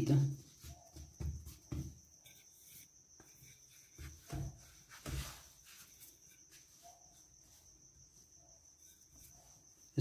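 Faint handling sounds of yeast dough being pressed flat by hand and rolled with a wooden rolling pin on a floured wooden board: a few soft knocks in the first two seconds and again around four to five seconds in, then quieter rubbing. A faint steady high-pitched tone runs underneath.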